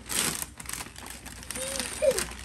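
Gift wrapping paper being torn, with a loud rip right at the start, then crinkling as the loose paper is handled.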